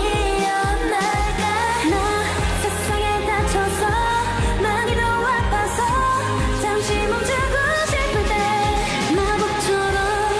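K-pop song performed in concert: women's voices singing over an electronic pop backing track with a steady beat.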